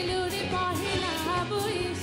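A female vocalist singing a melodic line with vibrato into a stage microphone, backed live by a band with electric guitars and drums keeping a steady beat.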